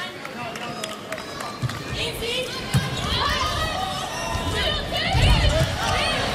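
Volleyball rally on a hardwood court: a few sharp thumps of the ball being struck, over an arena crowd's cheering and shouting that grows louder as the rally goes on.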